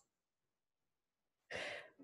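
Dead silence from a muted microphone, broken about one and a half seconds in by a single short breath, a sigh, as the microphone comes back on.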